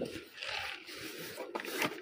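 A dholak being tipped over and laid across the player's lap: its wooden shell and fittings scraping and rustling against cloth and cushions, with a couple of light knocks near the end.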